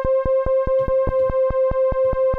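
A held synthesizer note at one steady pitch, a square-wave oscillator with its pulse width modulated by an LFO from a Bastl Neo Trinity module. The tone is cut by sharp, even clicks about five times a second as the LFO steps the pulse width.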